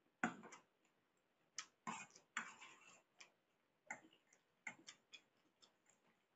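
Eating pasta with a fork from a stainless steel plate: a string of short clicks and a few scrapes of the metal fork on the plate, with chewing. The loudest click comes about a quarter second in.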